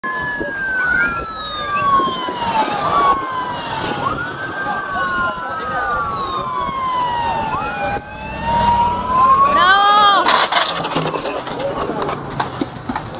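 Several sirens wailing and overlapping, their pitch rising and then falling slowly. Near the end one switches to a quick up-and-down warble, followed by a short burst of noise.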